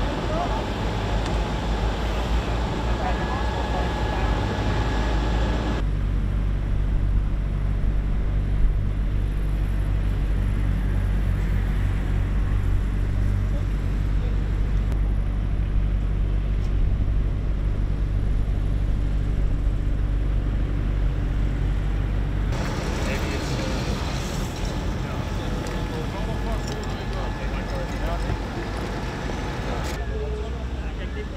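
A large vehicle engine idling with a steady low hum, with voices talking in the background. The background changes abruptly twice, about six seconds in and again past the twenty-second mark.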